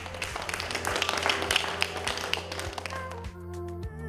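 Upbeat music with a steady drum beat, and a group of people clapping along for roughly the first three seconds. After that the clapping stops and only the music remains.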